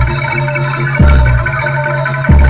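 Javanese jaranan gamelan music playing live: metallophones ringing steadily over a deep, low beat that lands about once every 1.3 seconds, once about halfway through.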